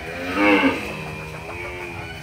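A young Charolais calf bawls once as it is pulled along on a lead rope. The call is loudest about half a second in, then trails into a lower, drawn-out moo.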